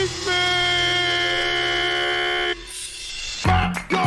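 A DJ air-horn effect: one long steady horn blast that cuts off abruptly about two and a half seconds in, after which the hip hop beat comes back in near the end.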